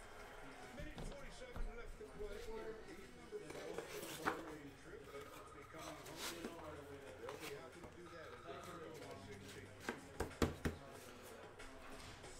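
Faint, indistinct voices in the background, with scattered light clicks and taps from cards being handled on a table; a quick cluster of sharper taps about ten seconds in is the loudest part.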